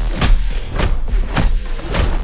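Fight sound effects from a film trailer: four sharp punch-and-impact hits, roughly evenly spaced, over a deep steady rumble.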